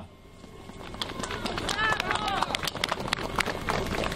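Crowd applauding, building up over the first second or so and carrying on steadily, with a voice or two calling out from the crowd in the middle.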